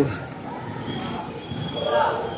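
Rustling and movement noise from a man doing a sit-up, with a short breathy grunt of effort near the end. A faint steady high tone runs from about halfway.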